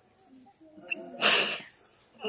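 A woman's short, sharp sobbing breath about a second in, a single breathy rush without voice, between pauses in her weeping.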